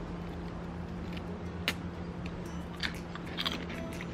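Quiet mouth sounds of people biting into and chewing soft jackfruit flesh, with a few small clicks and one sharper click near the middle. A steady low hum runs underneath.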